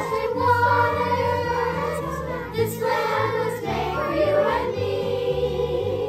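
Children's choir singing a song in unison with instrumental accompaniment; the voices end shortly before the end while the accompaniment plays on.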